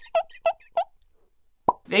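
Cartoon pop sound effects of an animated video transition: three quick bubbly plops about a third of a second apart, then a single sharper pop near the end.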